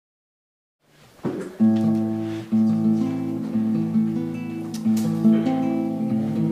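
Acoustic guitar strumming slow chords, starting about a second in after silence, with a new chord struck roughly once a second and left to ring.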